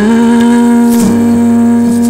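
Song: a voice holds one long, steady note over the accompaniment.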